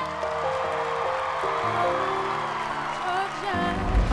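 Background music holding sustained chords that change a few times, then a low whoosh swell near the end.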